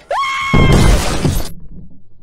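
Speargun fired underwater, striking a fish: a sudden loud crash about half a second in that dies away after about a second.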